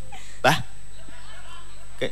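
One short spoken syllable about half a second in, over a steady low hum; otherwise little more than faint background voices.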